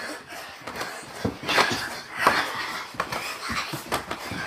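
Children doing jumping jacks on carpet: soft thumps of feet landing and clothes rustling, about one and a half jumps a second, with heavy breathing.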